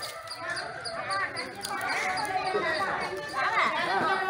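Several people talking at once in the open, indistinct, their voices louder in the second half.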